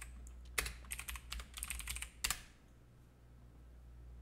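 Typing on a computer keyboard: a quick run of keystrokes that stops a little over two seconds in, ending on one sharper key press.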